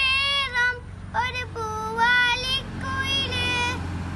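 A young boy singing a Malayalam Onam song solo, holding long wavering notes in phrases with short breaths between them.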